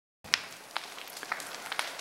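A burning brush pile crackling: scattered, irregular sharp pops over a faint hiss, the loudest one just after the sound begins.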